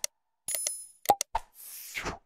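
Sound effects of an animated subscribe reminder: sharp clicks, a short bell-like ding about half a second in, a few more clicks, and a rushing whoosh near the end.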